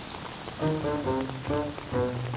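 Rain falling steadily, with a short melodic music cue of separate stepping notes coming in about half a second in.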